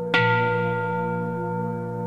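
A bell struck once just after the start, ringing on in several clear steady tones that slowly fade, over a low steady hum.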